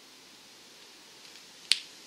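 A single sharp finger snap near the end, over faint room hiss.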